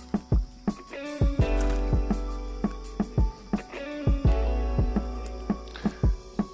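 Background music with a steady beat and held bass notes.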